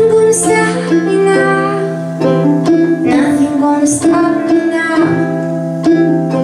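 Live folk band playing: strummed acoustic guitar with electric bass and keyboard, and a woman singing.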